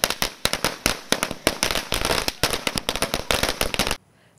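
A string of firecrackers going off in a rapid, irregular chain of sharp cracks, several a second, cutting off suddenly at the end.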